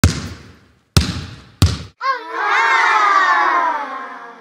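Logo intro sound effects: three loud hits in quick succession, then a sustained many-toned swell that wavers at first and slowly falls in pitch as it fades.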